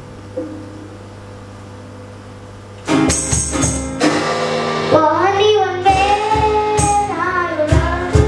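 A short pause with only a faint low hum, then music with a steady beat and tambourine comes in about three seconds in. A young girl's singing voice joins about two seconds later.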